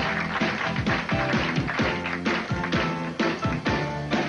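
A live studio band playing an up-tempo instrumental on keyboards and electric guitar, driven by a steady drum beat.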